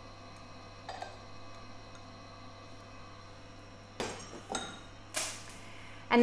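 Glass lab beakers clinking as they are handled and set down on a steel bench: a faint knock about a second in, then a few sharper, louder clinks near the end, over a steady low hum.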